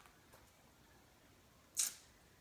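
A pen scratching briefly across paper: one short, sharp stroke near the end, with a fainter one about a third of a second in.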